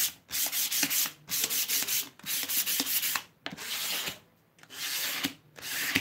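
Hand sanding with a sheet of medium 320-grit sandpaper on a painted wooden fence piece, rubbing along the grain in strokes of about a second each with brief pauses between them. The sanding wears back the aged patina for a distressed finish.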